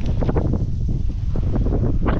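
Wind buffeting the camera's microphone: a steady low rumble, with a few short scuffing noises near the start and again late on.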